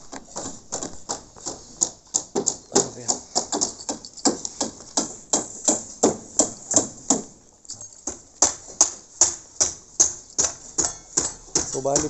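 Rapid, irregular sharp clicks or taps, about four to five a second, with voices in the background.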